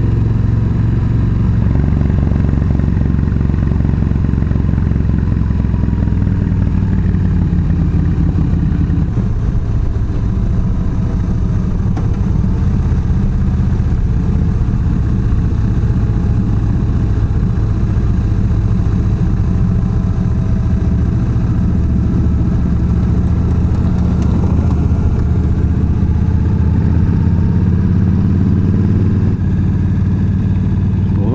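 Yamaha V Star 1300's V-twin engine running steadily under way, heard from the rider's seat, its note shifting about nine seconds in.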